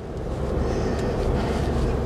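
Steady low hum of engine and road noise heard from inside a vehicle's cabin as it drives slowly, rising a little in the first half second, then holding even.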